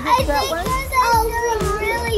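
Children's excited voices shouting and playing over background music with a steady beat.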